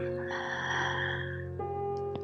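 Calm instrumental background music with sustained notes, the chord changing about one and a half seconds in. Over it, a long audible exhale through the mouth, about a second long, near the start.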